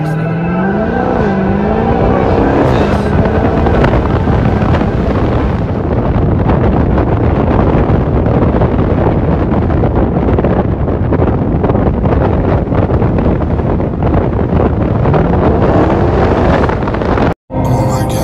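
Car engine accelerating hard: its pitch climbs, dips and climbs again over the first few seconds, then gives way to a loud, steady rush of engine and wind noise. It climbs in pitch once more near the end, and the sound cuts out briefly just before the end.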